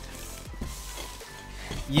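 A soft, scratchy rustle of a grey foam case lid being shifted by hand, over faint background music.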